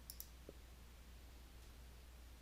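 Near silence, with a faint double mouse click just after the start, a button press and release, and a tiny tick about half a second in.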